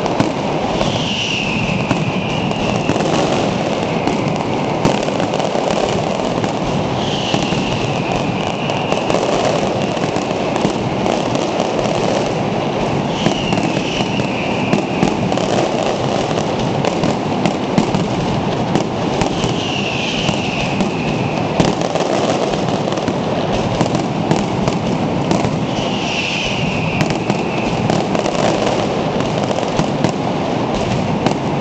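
Fireworks going off in a dense, unbroken barrage of crackling and bangs from rockets and firecrackers. Over it, a falling whistle comes back about every six seconds.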